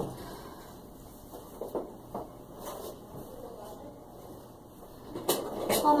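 A few soft knocks and clicks of objects being handled at an office desk, with a quick run of sharper clicks near the end.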